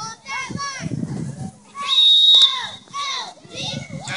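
Young children shouting and calling out during play, with one short, loud whistle blast about halfway through.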